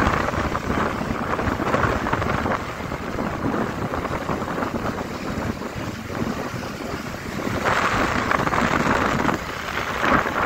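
Wind buffeting the microphone on a moving motorcycle, a steady rushing over the bike's road and traffic noise, growing louder near the end.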